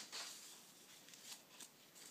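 Faint pencil-and-paper sounds: a few short, scratchy strokes, with a sharp tap right at the start.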